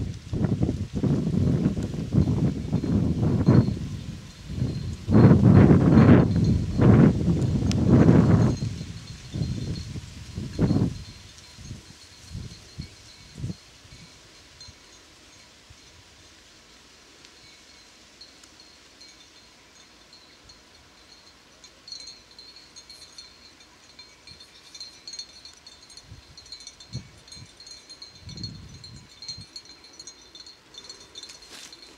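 Loud, gusty rumbling and rustling noise close to the microphone for roughly the first ten seconds, then much quieter, with a faint, high, steady ringing from about two-thirds of the way in.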